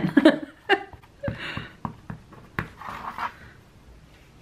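A woman's short laugh, then soft rustles of cotton fabric and a few light taps as hands handle the glued fabric piece on a tabletop.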